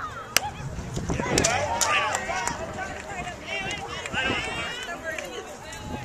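A baseball bat hitting a pitched ball with one sharp crack about a third of a second in, followed by spectators and players shouting and calling out.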